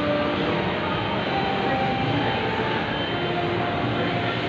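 Steady hubbub of a busy indoor public space: an even, dense noise with brief faint tones scattered through it.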